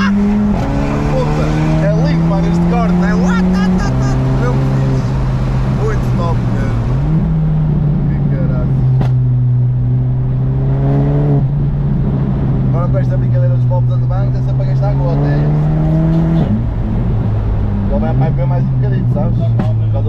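Stage 1–tuned VW Golf 7 GTI's turbocharged 2.0-litre four-cylinder, heard from inside the cabin as the car accelerates through the gears. The engine note rises steadily in each gear and drops sharply at each of several upshifts.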